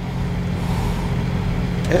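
A steady low hum, with a spoken word starting near the end.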